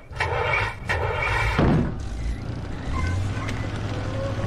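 A fired signal flare hissing through the air for about a second and a half, followed by the steady low rumble of a truck engine.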